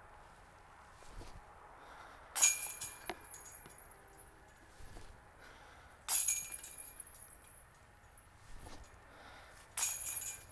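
Three disc golf putts striking the chains of a metal disc golf basket, spaced about three and a half seconds apart. Each is a sudden clinking jingle of chains that rings briefly and dies away.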